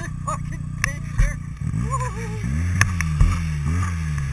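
Arctic Cat 1100 Turbo snowmobile's turbocharged four-stroke twin running under throttle. Through the second half its note swings up and down in pitch several times as the throttle is worked, with a few sharp knocks from bumps.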